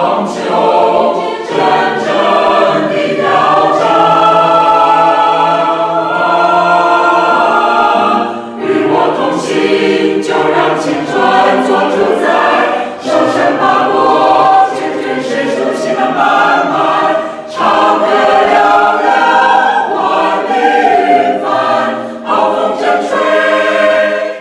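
A mixed choir of men's and women's voices singing together in sustained chords, phrase by phrase, with short breaks between phrases about 8, 13 and 17 seconds in.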